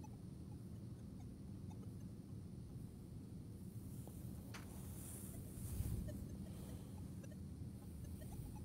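Faint, steady low background noise with light hand-handling sounds: one faint click about four and a half seconds in and a soft bump near six seconds.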